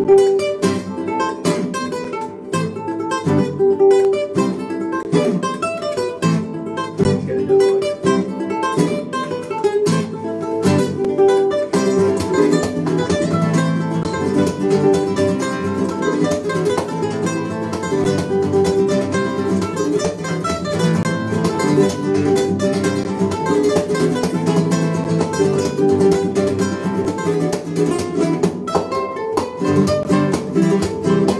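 Two nylon-string classical guitars playing a duet together, plucked melody notes over picked chords at a steady pulse, the texture growing fuller about twelve seconds in.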